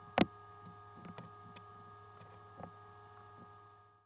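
Steady electrical mains hum with several faint steady whining tones above it, broken by one sharp click about a quarter second in and a few fainter clicks and knocks; it fades out at the end.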